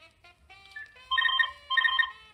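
A telephone ringtone sounds twice in quick succession, a double ring about a second in and again near the end. It is laid over faint music from a vinyl acetate playing on a turntable, and is not part of the record.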